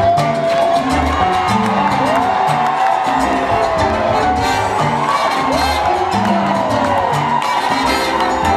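Live salsa band playing, with a violin sliding up into two long gliding notes that fall away again, over a steady bass and percussion rhythm, and a crowd cheering.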